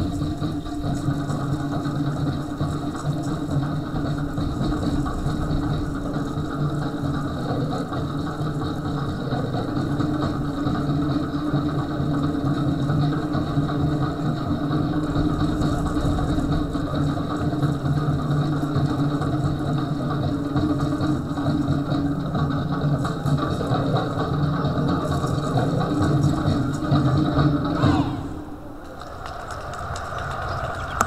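Fast, rapid Tahitian drumming of the kind that accompanies ʻōteʻa dance, a dense rolling drum beat that cuts off suddenly about two seconds before the end.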